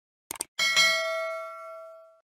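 Outro sound effect: a brief crackly glitch burst, then a bell-like ding about half a second in that rings with several tones and fades out over about a second and a half.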